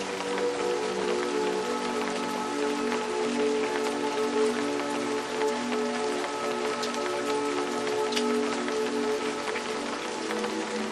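Steady rain with single drops ticking through the hiss, under soft ambient music of long held low notes that change slowly.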